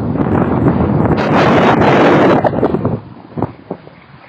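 Wind buffeting the microphone: a loud rushing noise that swells to its loudest in the middle and drops away sharply about three seconds in.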